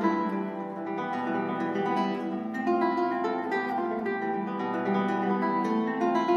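Solo classical guitar played fingerstyle, a continuous passage of plucked notes and chords ringing in a reverberant hall.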